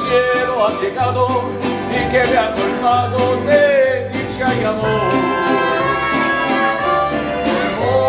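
A small live band of guitarists strumming acoustic guitars in a steady rhythm, about three strokes a second, with a sung melody over it.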